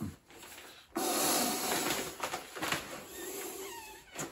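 Breath blown by mouth into the opened check valve of an inflatable sleeping pad: a long rushing hiss that starts about a second in, with a few faint squeaks near the end.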